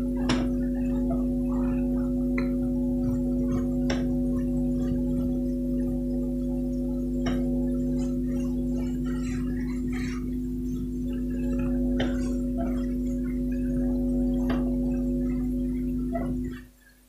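A steady drone of several held tones, with faint scattered taps and scratches of a marker on a whiteboard.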